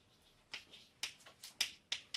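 Chalk writing on a blackboard: short, sharp taps and strokes, about five in two seconds, irregularly spaced.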